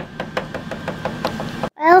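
Quick run of light taps, a small plastic doll's feet stepping across a plastic toy dollhouse floor, about six taps a second, cutting off abruptly near the end.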